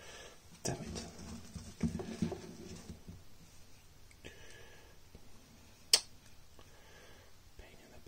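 Quiet room sound with a faint murmuring voice and light handling noises. One sharp click about six seconds in is the loudest sound.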